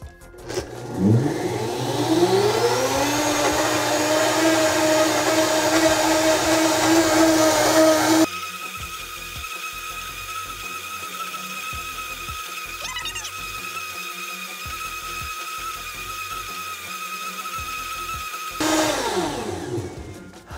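Blendtec blender's 1500-watt motor spinning up with a rising whine about a second in, then running steady and loud while blending liquid eggs. About eight seconds in the sound drops abruptly to a quieter, steady hum with a thin high tone, returns to full loudness near the end, and winds down.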